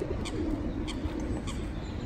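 Feral pigeons cooing, a low wavering coo that runs on, with a few short high bird calls over it.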